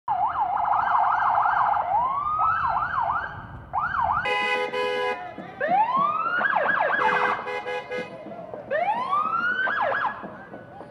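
Several emergency-vehicle sirens sounding together, a fast yelp at first, then slower rising and falling wails. A loud horn blast cuts in about four seconds in, with a few short horn blasts around seven seconds.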